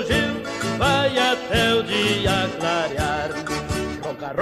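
Instrumental passage of a bugio, the southern Brazilian gaúcho dance: an accordion melody with bending notes over a steady, even beat.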